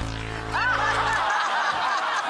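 A low, harsh game-show buzzer sounds for about a second and a half, the wrong-answer strike buzzer, while the studio audience and contestants laugh.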